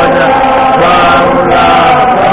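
A large stadium crowd singing together as one massed chorus, many voices holding notes in unison, loud and steady.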